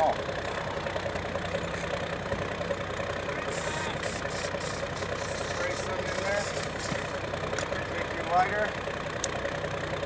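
Aerosol can of starting fluid (ether) sprayed in several short hissing bursts from about three and a half to seven seconds in, over a steady engine-like hum.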